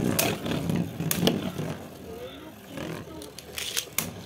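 Two battle tops (Beyblades) spinning in a plastic stadium: a low whirring rumble, broken a few times by sharp clacks as the tops knock together.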